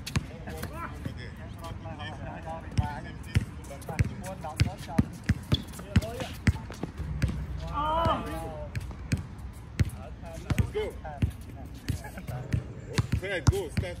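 A basketball bouncing on an outdoor hard court during a pickup game, with irregular sharp knocks from the ball. Players call out now and then, with one loud shout about eight seconds in.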